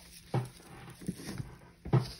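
Two soft knocks about a second and a half apart, with a few faint ticks between: small plastic hula-girl figurines being handled and put down.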